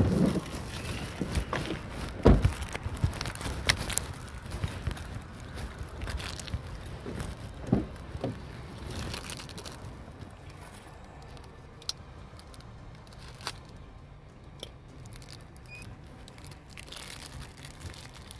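Rustling and knocks of a body-worn camera being handled and brushed by clothing inside a patrol car. There are several sharp knocks in the first four seconds, the loudest about two seconds in, then fainter rustling with a few isolated clicks.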